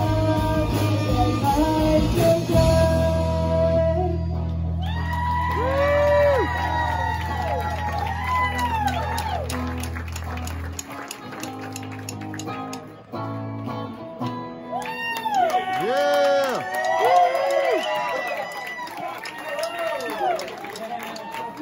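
Live rock band playing: electric guitars, bass guitar and drums with a female lead singer. The low bass notes stop a little past halfway and the music thins, while voices rise and fall in long held notes.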